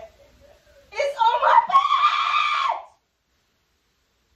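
A woman screaming once, a high-pitched held scream of about two seconds starting about a second in, which cuts off suddenly.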